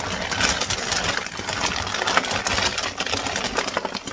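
Frozen crinkle-cut fries poured from a plastic bag onto a baking sheet: a dense, continuous clatter of many small hard pieces landing, with the bag crinkling.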